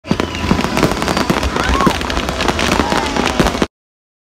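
Fireworks display: a dense, rapid run of bangs and crackles, with voices under it. The sound cuts off suddenly near the end.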